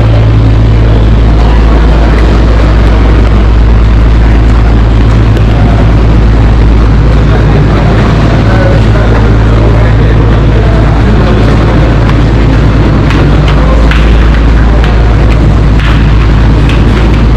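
A loud, steady low rumble with a droning hum underneath, unchanging and covering everything else, with a few faint clicks near the end.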